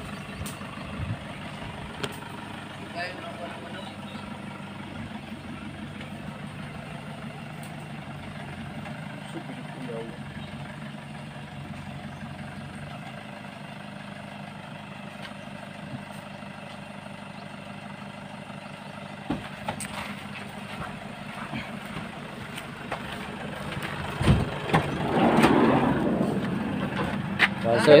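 A passenger van's engine running at low revs with a steady low hum while the van is maneuvered into position. A few seconds before the end a louder, rushing noise swells up and dies away.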